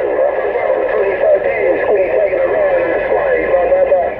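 Received voice transmission on a Stryker SR-955HP 10-meter transceiver: garbled, unintelligible speech from another station over a steady static hiss, thin and cut off above a narrow audio band.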